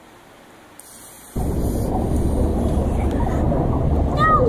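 A loud, steady low rumbling noise that cuts in suddenly about a second and a half in, after near quiet, and holds on evenly.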